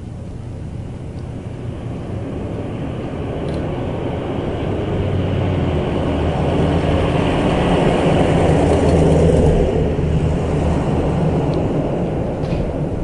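A car engine running with a low hum, getting steadily louder for about nine seconds and then easing off.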